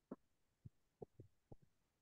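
Near silence on an open video-call microphone, broken by about six faint, very short knocks spread over the two seconds.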